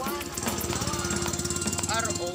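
Small motorcycle engine of a passing tricycle running with a rapid, even putter that comes in about half a second in.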